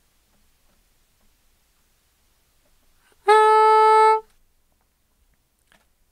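Bb soprano saxophone playing a single held middle B-flat, fingered without the octave key, lasting about a second and starting about three seconds in; the pitch is steady.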